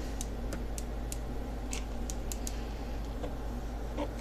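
Light, irregular clicks and ticks from hands working a hot glue gun and the pleather-wrapped bow handle, over a steady low hum.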